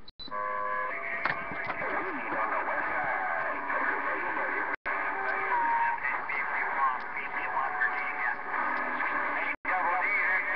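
Galaxy CB radio receiver audio on a crowded channel: several distant stations talking over one another, garbled and hard to make out, with steady whistle tones mixed in. The audio cuts out for an instant twice, around the middle and near the end.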